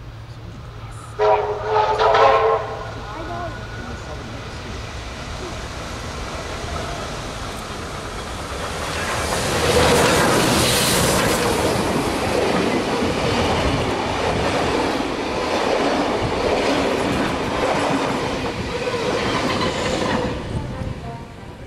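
Beyer-Garratt AD60 articulated steam locomotive 6029 sounding its steam whistle briefly about a second in. Then the locomotive and its passenger carriages pass close by at speed, loudest from about ten seconds in.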